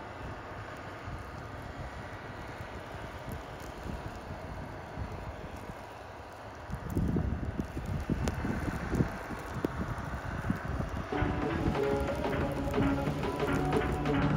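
A snowcat working at a distance: a steady outdoor hiss, then irregular low rumbling from about seven seconds in as the machine pushes snow. Music fades in over the last few seconds.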